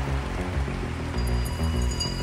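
Live band music played over a stadium PA and recorded from within the audience: an instrumental passage with a moving bass line and low chords and no singing. Some high, steady tones come in about halfway through.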